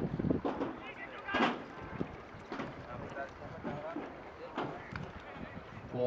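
Indistinct voices talking, with a few sharp knocks; the loudest knock comes about a second and a half in.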